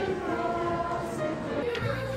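Children's choir singing together, holding long notes in several overlapping voices.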